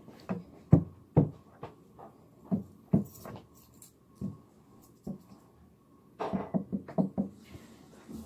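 Handling noise: scattered soft knocks and thumps close to the microphone, with a denser run of them about six seconds in.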